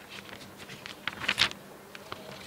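Sheets of paper rustling as pages are handled and turned: a few short, crisp rustles, the loudest about one and a half seconds in.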